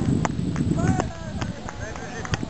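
Sharp pocks of beach tennis paddles striking a ball, several in the two seconds, with voices calling and a low rumble that fades about a second in.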